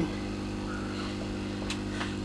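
An aquarium air pump running with a steady low electrical hum, with one faint click near the end.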